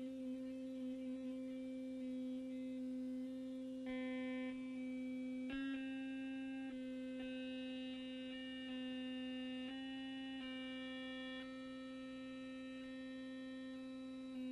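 A quiet, sustained electronic drone holding one low note, with higher tones above it that shift to new pitches every second or so, like a slow synthesizer chord sequence.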